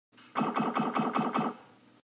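Short logo-intro sound effect: a quick stuttering run of about six repeated pitched pulses, about five a second, that dies away about a second and a half in.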